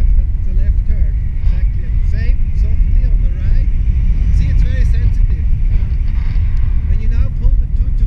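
Wind rushing over the camera microphone in flight under a tandem paraglider: a loud, steady low rumble of buffeting air. Muffled voices sound faintly under it.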